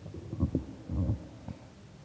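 A few short, low, muffled thumps and rumbles in the first second or so, then quieter.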